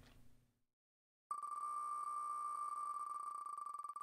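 Spinning name wheel's tick sound effect. After about a second of near silence the wheel starts and gives a rapid run of high clicks, so fast they blend into a steady beep, and near the end they begin to come apart as the wheel slows.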